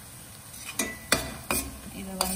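Metal slotted spatula stirring onion-tomato masala and spice powders in a stainless steel frying pan, knocking sharply against the pan three times about halfway through, over a soft sizzle of the oil.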